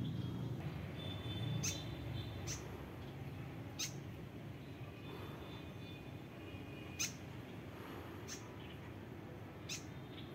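About six short, sharp, high chip notes from a small bird, coming singly at irregular intervals a second or more apart, over a steady low rumble.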